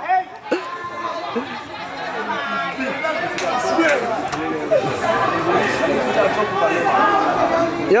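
Many voices talking at once: the overlapping chatter of spectators at an indoor soccer match, with no single voice standing out.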